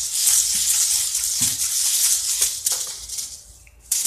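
Hula hoop spinning round the waist, giving a steady, high rattling hiss that stops shortly before the end as the hoop comes down.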